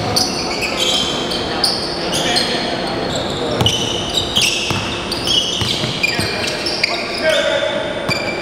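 Basketball game sounds on a hardwood court: sneakers squeaking many times in short high-pitched chirps as players cut and stop, with the ball bouncing.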